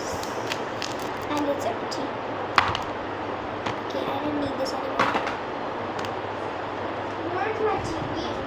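Plastic wrapper and a small chocolate box being handled, with two sharp clicks, one a little after two seconds in and another about five seconds in.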